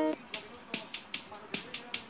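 A melodic jingle ends just after the start, followed by a steady run of sharp clicks, about two and a half a second, much softer than the jingle.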